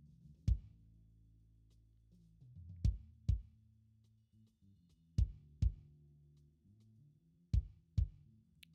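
Live-recorded kick drum microphone track played back soloed: six kick hits, mostly in close pairs, EQ'd with a low boost around 65 Hz and the 250–350 Hz range cut. Between the hits the stage's bass guitar bleeds into the kick mic as sustained low notes.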